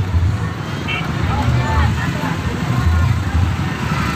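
Engine of a decorated open passenger vehicle running at low speed, with the voices of people around it.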